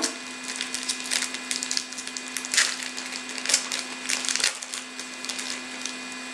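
A trading-card pack's wrapper being torn open and crinkled by hand: irregular crackling and rustling, with a few louder crackles around the middle.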